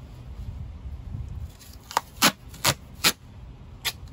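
Five short, sharp clicks in the second half, from fingers picking at the end of a roll of duct tape to lift it free, over a low rumbling noise in the first second and a half.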